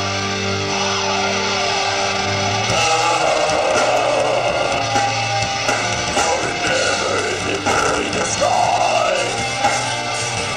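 Live band playing heavy, guitar-driven rock with electric guitars, bass, drums and keyboard. A chord is held for about the first three seconds, then the full band comes in with drums.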